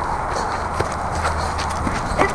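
Footsteps on rough outdoor ground: a few faint knocks over a steady low rumble on the microphone.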